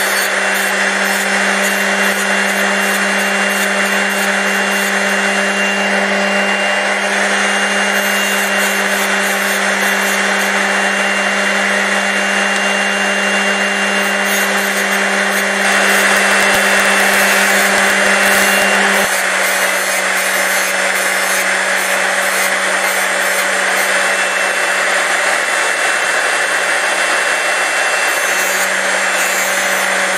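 SRD drill sharpener's 5,000 RPM motor running with its cup wheel grinding the cutting edges of a drill bit: a steady hum under a hissing grind. The grind gets louder for a few seconds just past the middle, and after that the hum shifts slightly.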